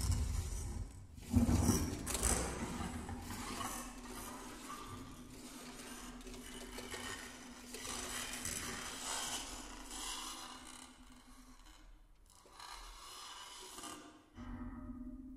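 Baritone saxophone and live electronics playing a contemporary piece with extended techniques: rasping, scraping noise with a faint held low note underneath, after a loud burst about a second in. The texture thins almost to quiet around twelve seconds, then softer noise returns near the end.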